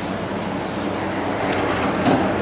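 Doors of an Otis Series 1 hydraulic elevator sliding closed: a steady mechanical running sound of the door operator and panels, growing slightly louder near the end.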